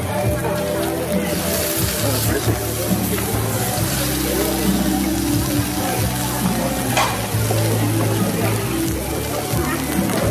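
Meat slices sizzling on a charcoal-heated mukata dome grill, a steady frying hiss, with background music throughout.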